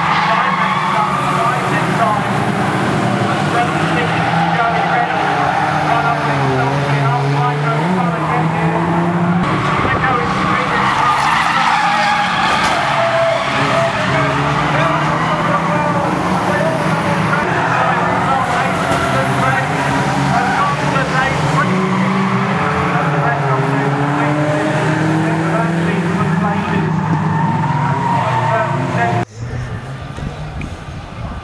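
Several banger racing cars' engines revving hard at once, their notes rising and falling as they race round the oval, with tyre noise. The sound drops away suddenly near the end.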